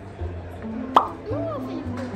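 Background music with a steady bass line, and about a second in a sharp cartoon-style pop sound effect followed by a few short whistle-like glides that rise and fall.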